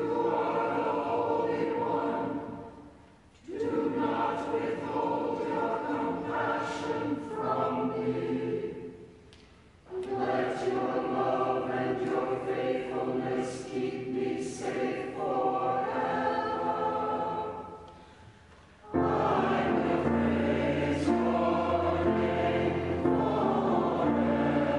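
Church choir singing psalm verses in English, line by line with short pauses between phrases. About 19 seconds in, a fuller, unbroken passage begins with deep bass notes added under the voices.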